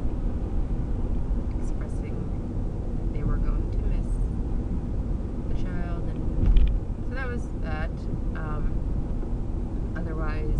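Steady low rumble of road and engine noise inside a moving car's cabin, with a person's voice heard in short stretches and a brief low thump about six and a half seconds in.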